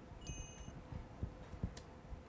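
A faint, brief high chime of a few steady tones sounding together for about half a second, over quiet room noise, with a faint click near the end.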